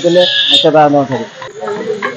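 A man speaking in Odia, a news reporter's voice into a handheld microphone.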